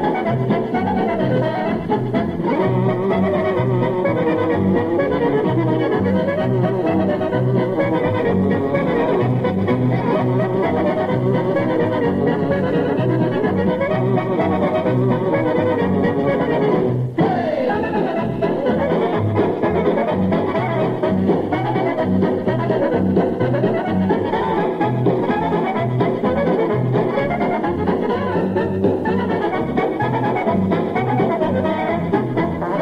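Polka record played by a band with accordion and brass over a steady oom-pah bass beat, with a dull, treble-less radio-broadcast sound. There is a brief dropout just past the middle.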